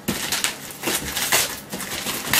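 Scissors cutting through the paper wrapping of a parcel: about five short rasping cuts, with paper rustling between them.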